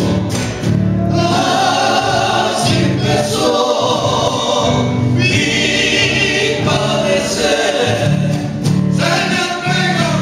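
Three male voices singing together in harmony, accompanied by three strummed acoustic guitars.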